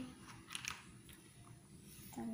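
A few faint clicks from small plastic toy parts being handled, about half a second in, over quiet room tone.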